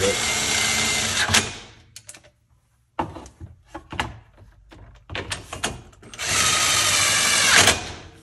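Cordless driver spinning in two runs as it drives bolts into a plastic center-console panel: one of about a second and a half at the start, a second of similar length near the end. Short clicks and rattles of handling fall between them.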